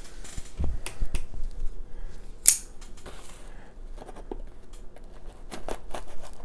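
Folding knife cutting the packing tape on a cardboard box: scattered sharp clicks and scrapes of blade on tape and cardboard, with one louder sharp snap about two and a half seconds in.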